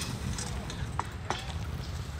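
Scooter rider's fall on a dirt hillside: his body and scooter sliding and scraping through dry dirt and mulch, with a few sharp knocks, one at the start and two more about a second in.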